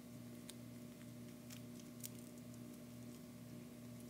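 Faint handling sounds of duct tape being wrapped around a bow and headband: a few soft, short clicks and rustles over a steady low hum.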